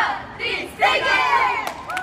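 A team huddle cheer: a small group of young voices finishes a count of "раз, два" (one, two) and then shouts together, with one loud group shout about a second in.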